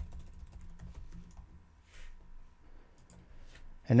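Computer keyboard keys tapped: a quick run of keystrokes typing a short command, then a few more taps after a pause.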